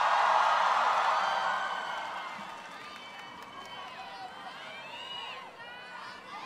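Large concert crowd cheering and screaming, loudest for the first two seconds and then fading, followed by scattered shouts and whoops from individual fans.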